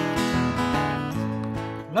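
Acoustic guitar strummed in a slow, steady country accompaniment between sung lines. The singing voice comes back in right at the end.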